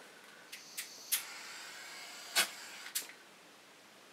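Butane torch flame hissing for about a second and a half while a small pile of silver glyoximate is heated and burns away, with a few sharp clicks before the hiss, where it starts, and two more where it ends and just after.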